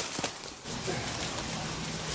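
Footsteps and trekking-pole taps on rock and dry leaf litter during a scramble up a boulder slope, with a few sharp taps in the first half-second and faint scuffing and rustling after.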